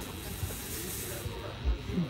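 Quiet stage sound from a live rock band between songs: a soft high hiss for about the first second, then two low thumps near the end.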